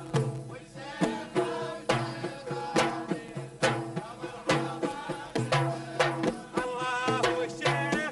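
Traditional Kuwaiti folk song: frame drums and a small double-headed hand drum struck in a steady beat, with men singing, the voices coming up more clearly near the end.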